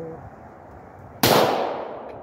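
A single .40 S&W pistol shot from a Glock 22 about a second in, its report ringing out and dying away over most of a second. On this shot the gun fails to feed the next round, which the shooter puts down to his weaker one-handed grip.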